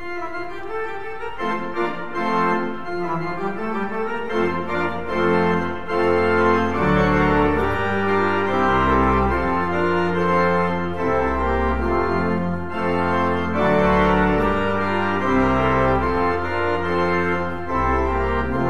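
Pipe organ playing a piece of sustained chords that change step by step, with a deep pedal bass line joining about four seconds in.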